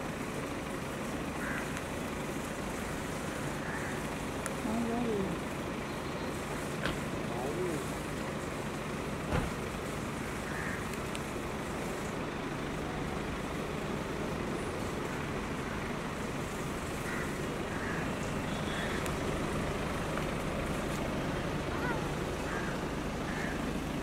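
Steady street traffic noise with a car running close by, faint voices in the background, and a single sharp knock about nine seconds in.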